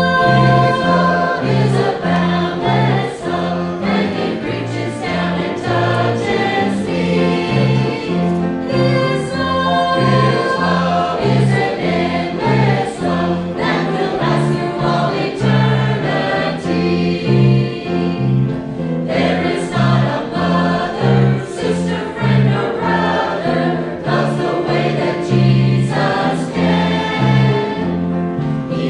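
Mixed church choir of men and women singing a hymn together in harmony, steadily throughout.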